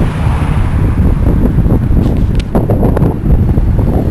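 Wind buffeting the microphone as a loud, steady low rumble while riding along a street, with vehicle and road noise underneath.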